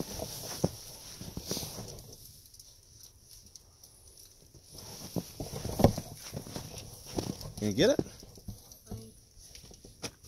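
Scattered knocks and crunches as a child handles a plastic toy dump truck in the snow, the loudest knock about six seconds in. A child's short vocal sound comes near eight seconds.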